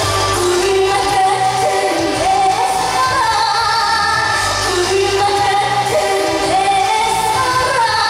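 A woman singing a Korean trot song live into a handheld microphone over instrumental accompaniment, her melody sliding and wavering between held notes.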